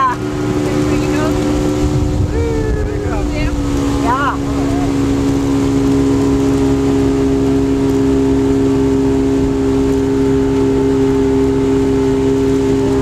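Speedboat engine running steadily under way, with a hum of wind and water. The engine note shifts slightly lower about three and a half seconds in, then holds steady.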